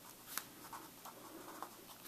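Pen writing on paper: faint scratching strokes with a few light ticks.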